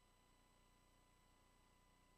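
Near silence: only a faint steady hum and hiss.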